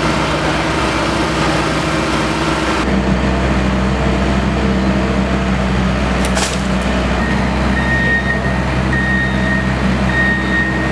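Construction machinery engine running steadily, with a single brief clank just past six seconds. From about halfway through, a vehicle's reversing alarm beeps repeatedly, roughly once a second.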